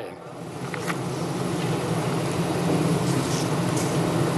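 Steady low hum and hiss of the chamber's background noise, growing slowly louder, with a few faint clicks.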